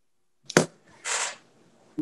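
Dead silence on a video-call line, then a short click with a brief, soft "yeah" about half a second in, followed by a short breathy hiss on the microphone.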